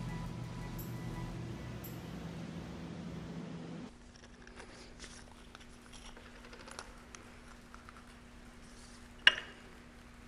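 Soft background music for about the first four seconds, then it stops and leaves a quiet room hum. Over the hum come faint clicks of small parts, cam followers and o-rings, being handled on a workbench, with one sharp tap near the end.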